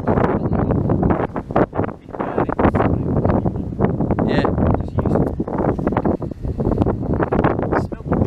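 Indistinct voices, too unclear to make out words, running on and off throughout.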